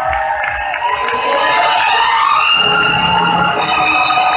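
Audience cheering and shouting, many voices at once.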